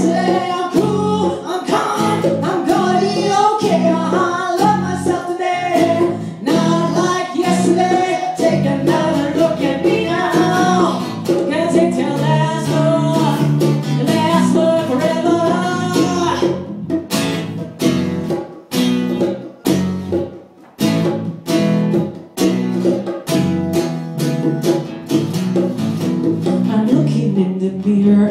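Live acoustic rock cover: a woman sings over a strummed acoustic guitar. After about sixteen seconds her voice drops out and the guitar strums chords alone until the voice comes back near the end.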